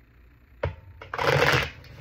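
A deck of oracle cards being riffle-shuffled by hand: a single tap about half a second in, then a rapid fluttering burst of cards lasting about half a second.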